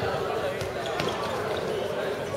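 A handball bouncing on a concrete court, about two dribbles a second apart, over the voices of players and spectators.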